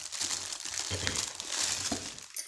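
Plastic packaging crinkling and rustling in the hands as it is handled and unfolded, with a few soft knocks.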